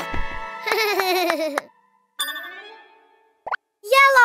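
Cartoon music and sound effects: a few soft plops, then a wobbly pitched sound that stops about halfway through. A brief chime follows and fades away, and a single click comes near the end.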